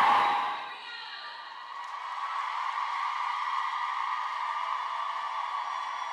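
A large crowd of voices in a big hall, cheering and shouting in a steady mass that swells slightly. Music fades out about half a second in.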